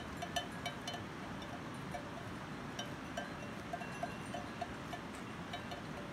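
Bells on grazing livestock clinking irregularly, short bright rings several times a second over a steady outdoor background hiss.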